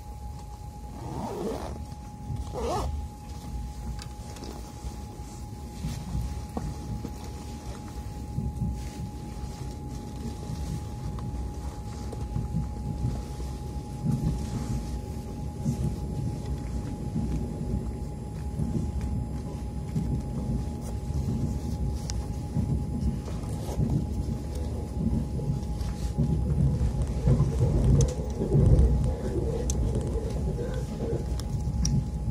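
Interior of a Moscow Central Circle electric train (Siemens Desiro "Lastochka") running between stations: a low rumble of wheels on rails that grows steadily louder as it gathers speed, over a thin steady hum. Two short falling whines come near the start.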